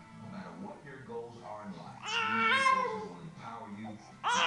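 An upset baby's high-pitched scream: one cry of about a second, starting about halfway in, its pitch stepping up slightly, over a television talking in the background.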